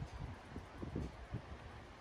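Wind buffeting a phone's microphone, with low irregular rumbles and a few soft thumps from the phone being moved.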